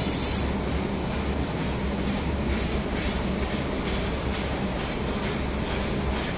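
Steady mechanical noise of a running electro-galvanizing wire production line: a low hum with a rattling haze, and faint ticks a couple of times a second.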